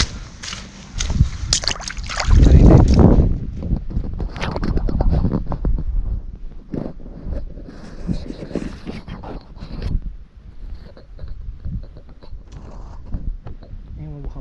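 Footsteps squelching and splashing through wet mud and puddles on a trail, in uneven steps, with a loud low rumble on the microphone about two seconds in.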